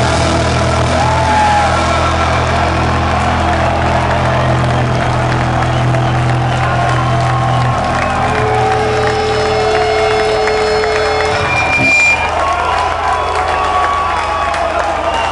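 A heavy metal band playing live with long held notes, a low sustained tone until about eight seconds in, then a higher one, over a crowd cheering and whooping.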